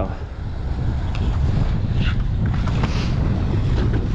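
Wind rumbling on the microphone, a steady low buffeting, over water lapping around a small boat.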